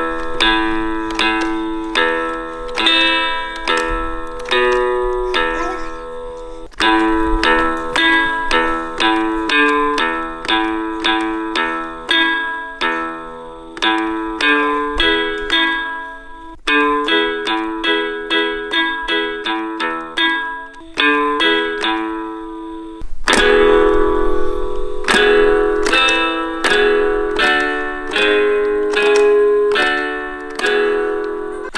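Mattel Coco toy guitar sounding plucked guitar notes through its built-in speaker as it is strummed and its fret buttons pressed: a melody of single notes one after another, with short breaks a few times.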